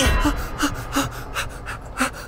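A man gasping and panting in quick, short breaths, about three a second, from the cold shock of sitting in an ice-cold plunge bath.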